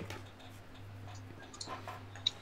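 Faint background hum with a few soft clicks, in a pause between voices.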